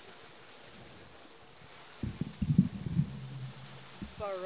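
Quiet outdoor background hiss, then about halfway through a cluster of low knocks and thumps lasting about a second, followed by a brief low hum.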